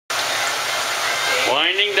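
Fish deep-frying in a pot of hot peanut oil: a loud, steady sizzle that thins out about one and a half seconds in.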